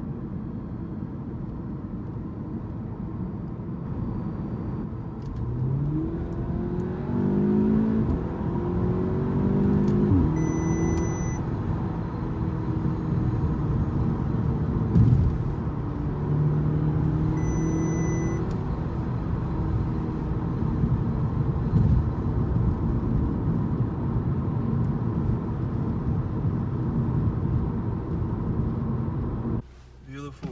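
Audi S3's turbocharged four-cylinder engine heard from inside the cabin, pulling hard through the revs twice, its note rising each time, over steady road and tyre noise. A few sharp exhaust pops break through, the loudest about halfway, and a short electronic beep sounds twice, each time as the revs peak.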